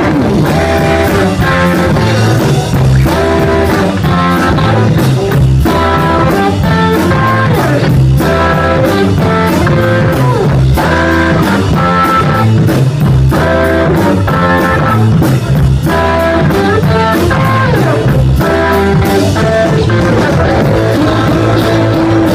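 Rock band playing loudly and without a break at rehearsal: guitar over bass and drums.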